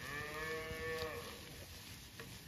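A cow mooing once, a single call of just over a second that rises slightly, then falls away.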